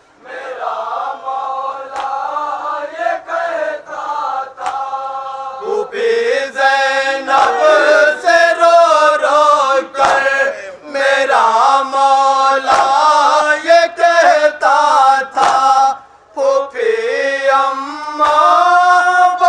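A group of men chanting a noha, a Shia mourning lament, into a microphone. A lead voice carries it at first, then the group comes in louder about six seconds in. Sharp chest-beating strikes (matam) fall now and then, with a short break in the voices near the end.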